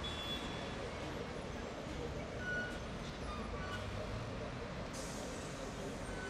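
Busy city intersection traffic: buses, taxis and trucks running as a steady rumble, with crowd voices mixed in. A few short high beeps come through, and a brief hiss about five seconds in.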